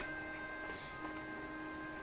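Faint steady humming tones, several pitches held level throughout, in a quiet room.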